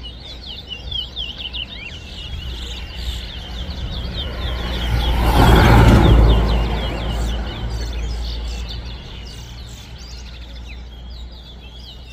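Caged male chestnut-bellied seed finches (towa-towa) singing quick runs of short, sliding chirps, one phrase after another. A loud rushing noise swells and fades about halfway through.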